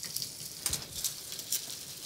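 Faint steady sizzle of food frying in a pan on the hob, with a few light clicks of a metal spoon on a plate and fish.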